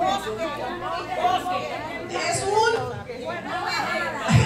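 Several people talking at once: overlapping audience chatter and replies, with no single clear voice.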